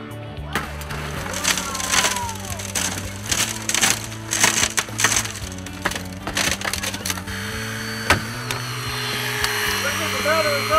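A Glass Master hand glass saw cutting through a car windshield's laminated glass in quick, irregular rasping strokes, about two or three a second, which stop about seven seconds in; one more sharp stroke follows near the end.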